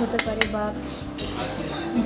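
Dishes and cutlery clinking, with two sharp clinks about a quarter and half a second in.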